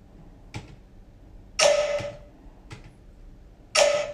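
Light clicks from laptop keys, and twice a short, loud hit with a ringing tone in it, about two seconds apart.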